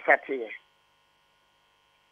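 A man's voice trails off in the first half second, then a pause in which only a faint steady electrical hum is left.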